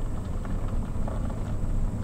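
A vehicle engine idling: a low, steady rumble.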